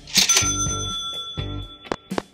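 A cash-register 'ka-ching' sound effect: a sharp metallic hit about a quarter second in, then a bright bell ring that holds for over a second, over background music.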